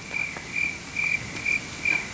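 Cricket chirps played as a stage sound effect for a night scene: short chirps at one high, steady pitch, about two a second, evenly spaced.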